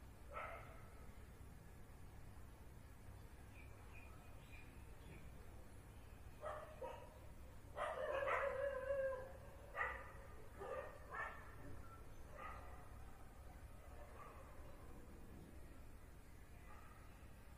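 A dog barking faintly about eight times at irregular intervals, the loudest barks coming together a little past the middle.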